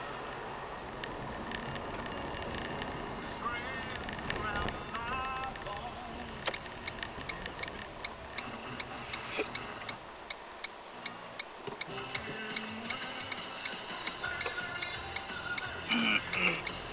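Music playing from the car radio inside the cabin, with a steady ticking of about three ticks a second that starts about six seconds in.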